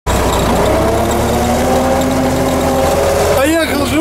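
Tractor engine running steadily, heard from inside the cab on the move: a low drone with a steady higher whine over it.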